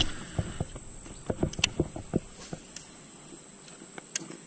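Steady high-pitched insect trill, with about ten light, irregular pattering taps in the first half.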